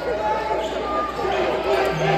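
Spectators talking over one another in a basketball arena, with a basketball being dribbled on the hardwood court.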